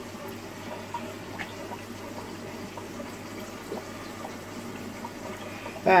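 Steady bubbling and water noise from aquarium aeration, an air-fed bubble wand sending a stream of bubbles up through the tank water, with a few faint ticks.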